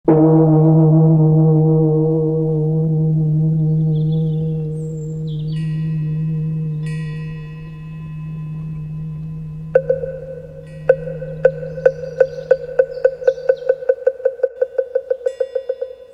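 A deep gong struck once at the start rings on and slowly fades out over about fourteen seconds. Higher chime tones join it, and from about ten seconds a ringing bell tone is struck again and again, the strikes speeding up toward the end.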